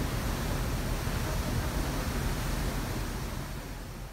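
Steady rushing noise of a fast ferry's churning wake and wind past the stern, with a heavy low rumble, fading away near the end.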